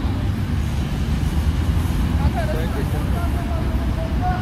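A steady low rumble of road traffic, with people talking faintly over it partway through.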